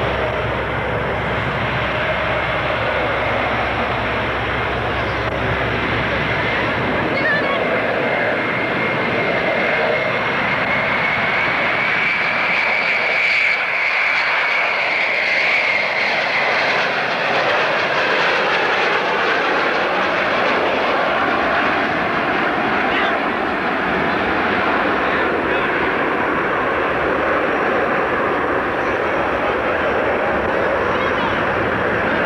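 Concorde's four Olympus 593 turbojets running loud as it makes a low pass over the airfield. A high whine rises slightly and then falls in pitch in the middle as the aircraft goes by.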